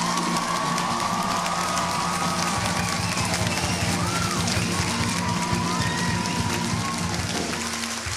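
Audience clapping and cheering, with high shouts rising and falling, over music holding a long chord; it fades slightly near the end.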